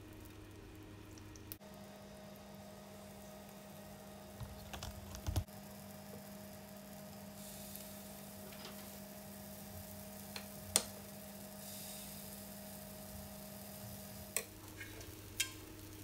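Faint sizzling of cake batter ladled into a hot mini martabak pan, with a few light clicks of the ladle against the pan over a steady low hum.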